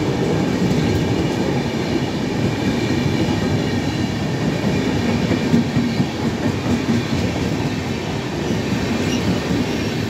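Passenger coaches of an express train running past at speed: a steady loud rumble of wheels on the rails, easing slightly over the last few seconds as the end of the train nears.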